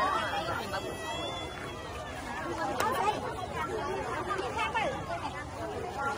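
A crowd of people talking at once: overlapping chatter from many voices.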